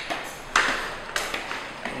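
Footsteps on a hard tiled floor, three sharp steps about half a second apart, each with a short ringing echo.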